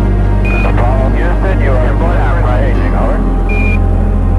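Apollo-era air-to-ground radio transmission: a short beep, a few seconds of radio speech, then a second short beep near the end, the Quindar tones that key the transmission on and off. It plays over a steady low drone.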